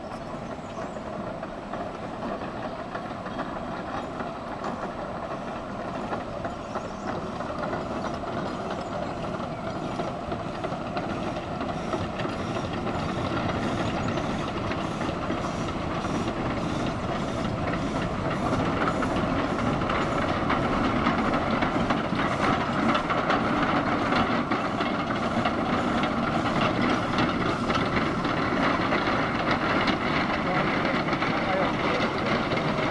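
Shay geared steam locomotive working up the track, its exhaust chuffing in a quick, even beat over the clatter of its running gear and steam hiss. It grows steadily louder as it approaches and draws alongside.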